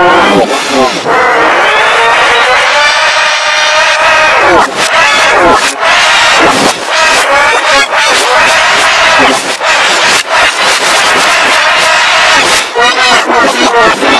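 A boy's screaming and shouting, played backwards and pitch-shifted into several layered copies, so it sounds loud, warped and chorused. A long held scream about a second in gives way to choppy shouts.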